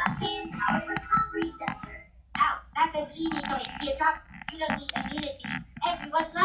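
Cartoon characters talking in quick bursts of dialogue, played through a speaker and picked up by the camera's microphone, over a faint steady low hum.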